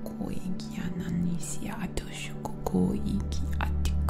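Steady low drone of sound-healing music, with a deeper tone swelling in about three seconds in. Over it, a woman's soft whispered, breathy vocal sounds come and go.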